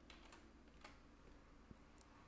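A few faint, scattered computer keyboard keystrokes as a web address is entered into a browser.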